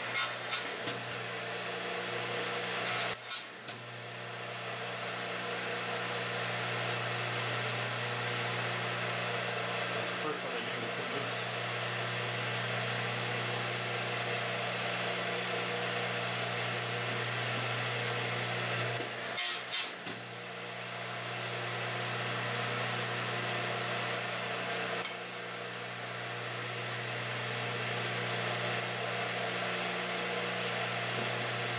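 Sears Craftsman 12-inch radial arm saw running steadily with a dado blade fitted, cutting rabbets for tenons on the ends of wooden hive-frame top bars. A steady motor hum and blade noise with a couple of brief dips.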